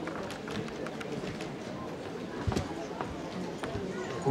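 Seated audience murmuring and shifting about, with scattered small clicks and knocks and one louder thump about two and a half seconds in.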